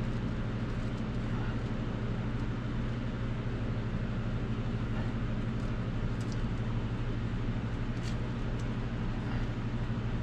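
Steady low hum of a running machine, with a few faint clicks about six and eight seconds in.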